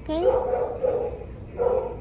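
A dog in the shelter kennels giving two long, drawn-out barks. The first rises and holds for about a second, and the second is shorter, near the end.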